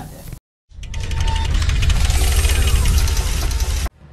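A loud edited-in transition sound: after a moment of dead silence, about three seconds of heavy deep rumble with hiss over it, ending in an abrupt cut.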